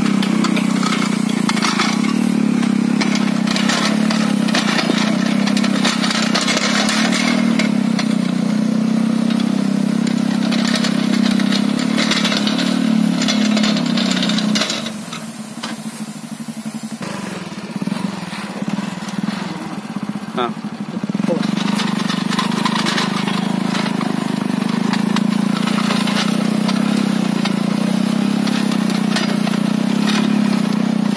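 Small walk-behind tiller engine running steadily under load while its ridger attachment cuts a furrow through soil. About halfway through the engine eases off for several seconds, then picks up again.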